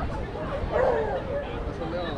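A dog barking once, about a second in, over the background chatter of a crowd.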